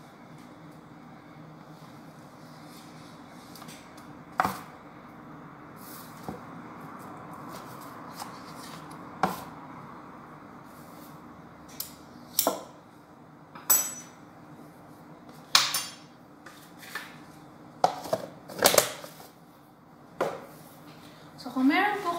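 Spoon knocking and scraping against a plastic tub and mixing bowl as butter is scooped into the flour: about eight scattered clicks and knocks over a steady low hum.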